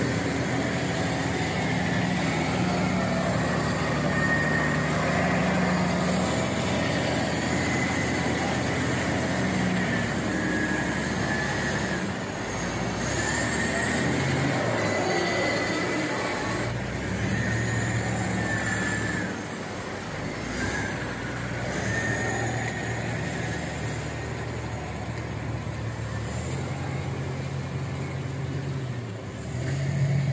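Heavy log truck's diesel engine working as it pulls a loaded log trailer along a muddy track, the engine note rising and falling, with wavering high-pitched metallic squeals from the rig. The sound eases off a little in the second half as the truck moves away.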